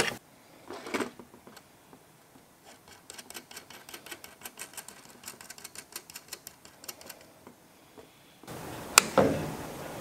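Quick light metallic clicking, about six clicks a second, as nuts are run down threaded steel rods by hand to stack circuit boards. Near the end a steady hiss comes in and there is one loud sharp knock with a short ring.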